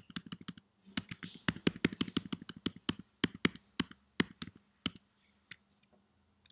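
Computer keyboard keys clicking in a quick, uneven run of keystrokes, which thins out and stops about five seconds in.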